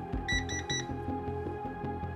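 Background music score with a low pulsing beat. Just after the start, three quick high electronic beeps sound in a row.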